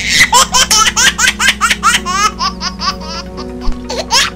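Rapid, high-pitched laughter: a quick string of short 'ha-ha' bursts that thins out after about three seconds and starts again near the end, over steady background music.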